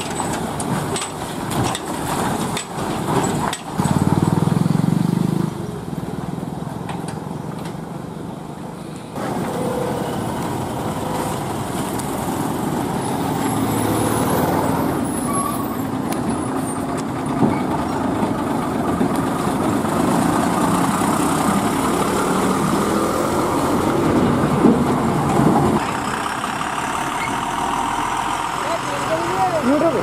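Heavy diesel lorries running slowly past over a rough, muddy road, engines and tyres steady, with a louder low engine stretch about four seconds in. Voices are heard in the background near the end.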